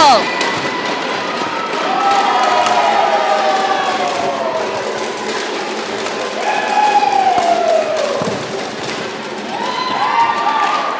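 Spectators' voices in a sports hall: two long drawn-out calls, each falling in pitch, over scattered claps and thuds.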